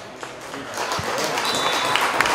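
Spectators applauding, the clapping swelling about halfway in.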